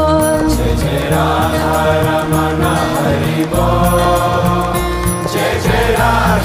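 Hindu devotional music: a chanted mantra sung over held drone and bass notes.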